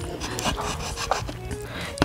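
Soft background music, with close-up chewing and wet mouth sounds over it.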